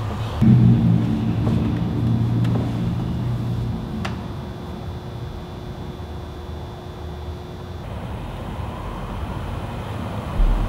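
A low droning hum that comes in sharply about half a second in and is strongest for the next three seconds, then thins out, with a faint steady high tone beneath it that stops near the end.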